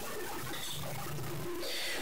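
A faint bird call over low background hiss.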